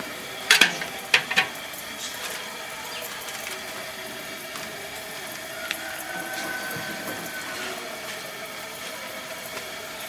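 A long metal ladle knocks against a large metal cooking pot three times in the first second and a half as the contents are stirred, followed by a steady background hiss.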